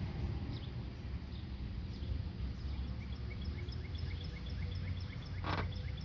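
Outdoor background: a steady low rumble with a regular series of faint high chirps from a small animal, about four a second. A short burst of noise comes near the end.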